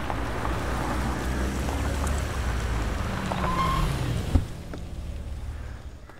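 A small Tata hatchback's engine running as the car rolls up a dirt lane, its note falling as it slows about three to four seconds in, followed by a sharp click.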